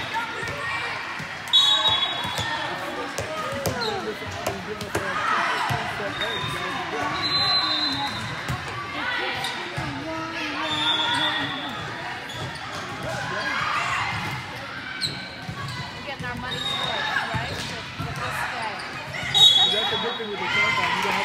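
Volleyball play in a large, echoing gym: ball hits and bounces come through again and again over players' calls and the chatter of people around the courts. There are sharp loud hits about a second and a half in and near the end.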